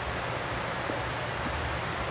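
Steady ventilation hiss with a low hum from the room's air handling, with a couple of faint taps in the middle.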